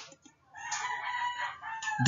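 A faint click, then about half a second in a single drawn-out animal call lasting roughly a second and a half, held on one pitch and dropping at the end.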